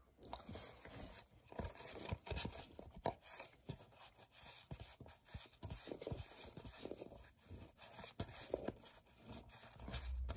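A stack of cardboard trading cards being thumbed through in the hand, cards sliding off one another in a quick, irregular run of soft scrapes and clicks.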